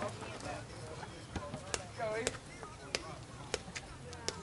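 Faint voices of people around a ballfield, cut by about six sharp knocks at irregular intervals through the middle and latter part.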